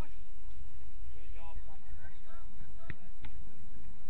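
Two sharp thuds of a soccer ball being struck, close together near the end, about a third of a second apart, over a steady low rumble.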